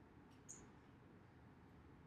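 Near silence: room tone, with one faint, brief high-pitched squeak about half a second in.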